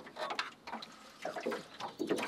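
Water splashing and trickling in a quick irregular run of small splashes as a trotline is hauled up out of a river by hand.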